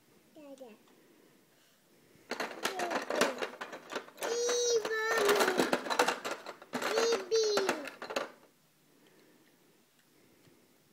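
Small plastic toys rattling and clattering as a toddler rummages through them in a box, starting about two seconds in and stopping near the end. A toddler's high-pitched babbling vocalizations come twice during the rattling.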